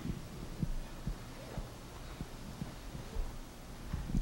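Soft, low thumps about twice a second over a steady low hum in a quiet auditorium.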